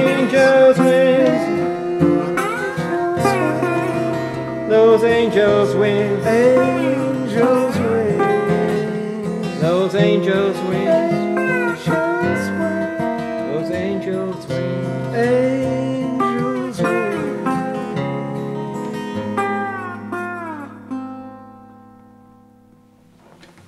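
Resonator guitar played with a metal slide, its notes gliding up and down over a picked acoustic guitar in an instrumental folk-blues outro. The two end on a held chord that rings and fades out over the last few seconds.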